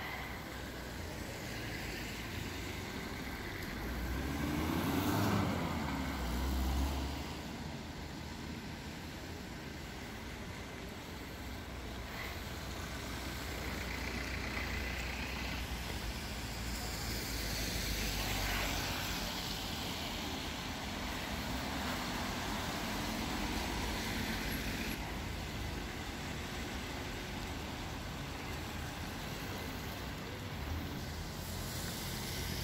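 Street traffic on rain-wet roads: a steady hiss of tyres and engines, with vehicles passing. The loudest pass-by comes about five seconds in, and another around eighteen seconds.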